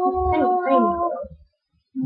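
A girl's voice holding a long, howl-like sung note, with short downward-sliding pitches over it. It breaks off about a second and a half in.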